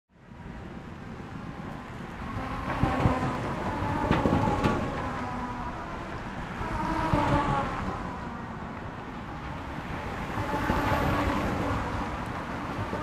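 Road traffic ambience: vehicles passing by, the noise swelling and fading several times as each one goes past.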